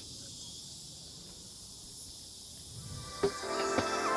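A faint steady high hiss of insects outdoors. About three seconds in there is a single knock, then background music fades in and grows louder.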